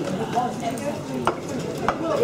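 Two sharp knocks of plates being set down on a wooden table, the second about half a second after the first, over a murmur of background conversation.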